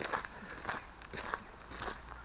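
Faint footsteps on a gravel track, a series of soft irregular steps.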